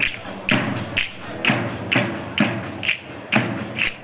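A frame drum struck in a steady dance rhythm, about two beats a second.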